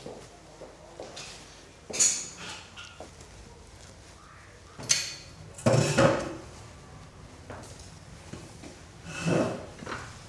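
A wooden chair pulled out and scraped across a hard floor as a man sits down at a table. There are four separate knocks and scrapes, the loudest about six seconds in and the last about nine seconds in.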